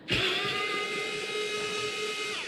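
Cordless electric screwdriver running with a steady whine as it unscrews a screw from the end cap of an aluminium e-bike battery case.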